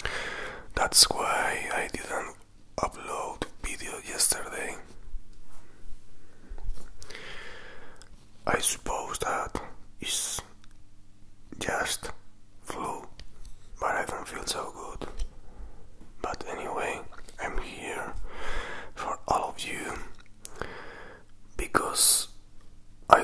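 Close-miked mouth and tongue sounds: breathy, whisper-like mouth noises with sharp wet clicks, coming in short bursts with brief pauses between.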